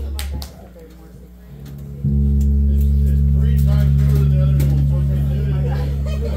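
Guitar amplifier and pedal rig humming between songs. The steady low electrical drone drops away about half a second in, then comes back louder with a click about two seconds in and holds unchanged, as from gear being switched or re-patched.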